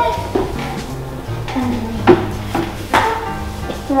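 Background music: a stepping bass line with a few sharp percussive hits.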